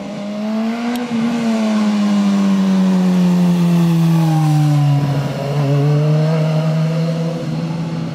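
A 2016 BMW S1000R's inline-four engine as the motorcycle rides past through a bend. The engine note climbs briefly and grows louder, then falls steadily as the bike passes and moves away, with a short break in the note about five seconds in.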